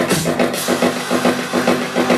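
Electronic house music from a live DJ set played loud over a club sound system, with a quick repeating pulse; the deep bass drops out shortly in, leaving the mid and high parts pulsing on.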